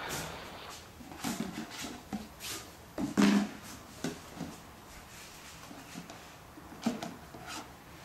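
Scattered knocks and rustles of people moving about and of a phone camera being handled in a small room. The loudest is a short thump about three seconds in.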